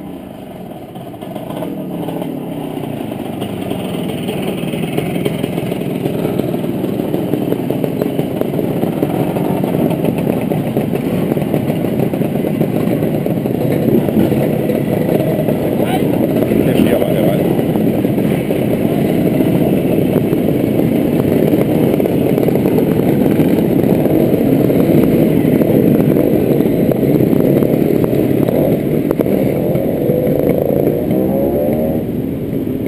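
Engines of a line of classic motorcycles riding slowly past at close range, one bike after another. The sound builds steadily louder as more bikes arrive, then stays loud.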